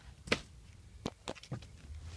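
Five light, sharp clicks and taps of hands handling the rear under-seat storage bin in a pickup's cab, the loudest about a third of a second in.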